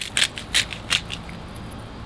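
Hand-twisted disposable spice grinders grinding salt and pepper: a run of gritty crunching clicks, strongest in the first second.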